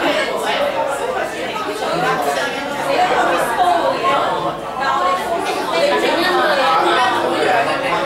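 Crowd chatter: many people talking at once.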